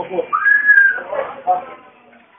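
A person whistling one note of just under a second, gliding up at the start and then held, between men's voices.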